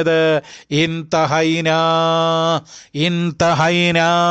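A man's voice in a chanted, sing-song delivery, drawing out two long held notes: one from about a second in lasting about a second and a half, another near the end, with shorter sung syllables around them.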